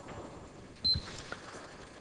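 Faint handling noise at a pulpit: a soft knock a little under a second in, with a short high beep at the same moment, over quiet room tone.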